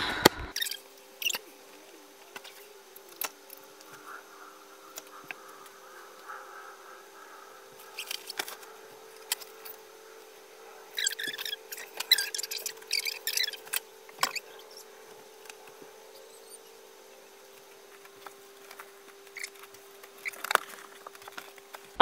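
Clothes and belongings being picked up and put away in a small room: rustling bursts, a heavier cluster of them about halfway through, and scattered knocks, over a faint steady hum.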